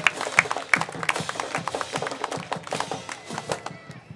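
Scattered clapping from a small stadium crowd, irregular sharp claps thinning out toward the end.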